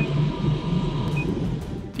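Film soundtrack of tense science-fiction scoring: a low, pulsing drone under a faint steady hum, with two short high beeps about a second apart.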